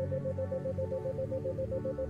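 Ambient synthesizer meditation music built on 528 Hz: held drone tones, with one tone pulsing about seven times a second as a 7 Hz isochronic tone.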